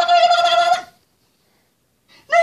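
A baby's long, high, rapidly stuttering belly laugh as an adult nuzzles her, breaking off about a second in.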